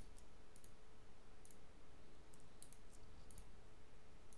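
Several faint computer mouse clicks, scattered and some in quick pairs, as objects are picked in the software, over a faint steady hum.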